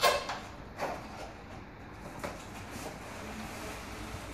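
A cardboard box and a plastic-wrapped toilet seat are handled as the seat is slid out of the box. There is a sharp knock at the start, another just under a second in, and lighter scraping and rustling after that.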